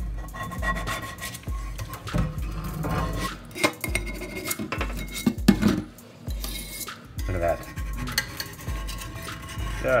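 A Lodge three-notch cast iron skillet being scraped and handled in a stainless steel sink, with a few sharp clinks and knocks as loosened old seasoning and gunk come off, taking it back to bare metal.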